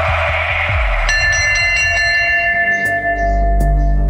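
Dramatic TV background score. A noisy swell over a pulsing low beat cuts off about a second in. It gives way to sustained high ringing tones, and a deep low drone comes in near the end.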